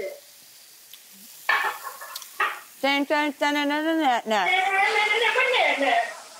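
Marinated steak skewers sizzling faintly in a hot cast-iron skillet as they are turned over. From about a second and a half in, a person's voice makes long, wavering wordless sounds over the sizzle, louder than it.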